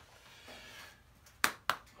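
Two short, sharp clicks about a quarter of a second apart, in an otherwise quiet stretch.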